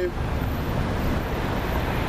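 Steady road traffic noise, an even, unbroken rumble with most of its weight low down.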